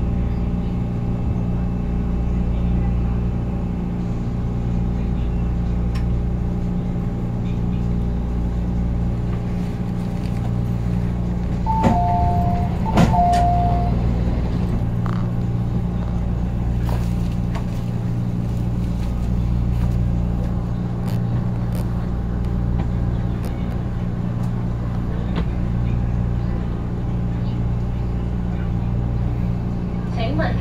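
Metro Cammell EMU train slowing to a stop and standing at the platform, heard from inside the car as a steady low electrical and mechanical hum. About twelve seconds in, a two-note falling chime sounds twice in quick succession, with clicks.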